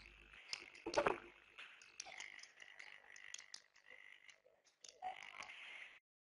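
Faint, crackly background noise on a web-conference audio line, with scattered small clicks and one short vocal sound about a second in.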